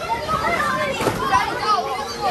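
A group of children playing on an inflatable bouncy-castle slide: several young voices shout and squeal over one another without clear words, with a thump about a second in.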